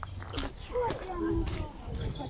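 Footsteps on a gravel path, with indistinct voices of other people in the background.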